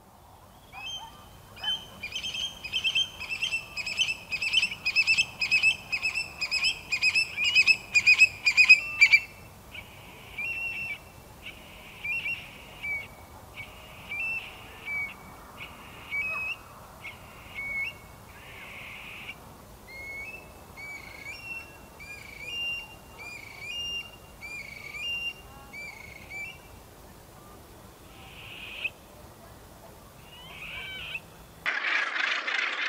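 Eurasian stone-curlew calling: a fast run of loud, repeated calls that grows louder over the first nine seconds, then softer, spaced calls with rising and falling inflections.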